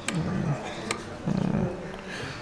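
A few sharp keystrokes on a laptop keyboard as a number in the code is deleted and retyped, with short low wordless voice sounds between them.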